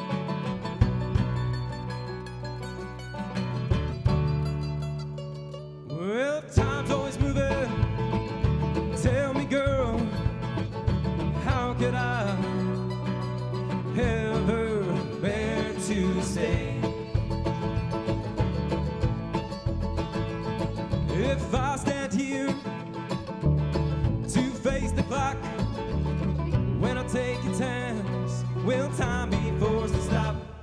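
Live acoustic folk/bluegrass band playing: upright bass, banjo and acoustic guitar over a kick drum. A man's lead vocal comes in about six seconds in.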